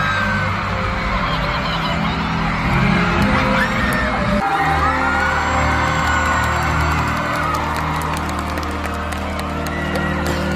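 A live band plays in an arena while the crowd screams and cheers, heard from among the audience. The band's low notes change abruptly about four and a half seconds in.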